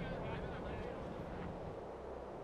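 Faint, indistinct voices over a steady low rumble of outdoor background noise.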